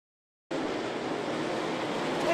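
Dirt late model race cars' V8 engines running at speed on a dirt track, cutting in abruptly about half a second in after dead silence.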